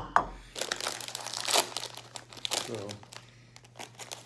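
A bowl knocks down onto the table at the start, then a plastic snack bag crinkles and rustles for a couple of seconds as it is handled and torn open.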